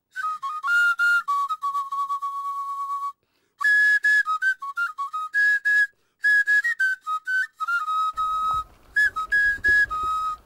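Background film score: a solo whistle- or flute-like melody moving in short stepped notes, broken by a brief silence about three seconds in. Low background noise comes in underneath near the end.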